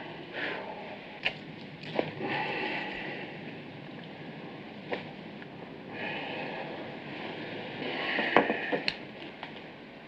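Hushed operating-room sound over a steady hiss, with a few light clicks and soft rustling as surgical instruments and gowns are handled. The clearest clicks come about a second in, about two seconds in, midway, and twice near the end.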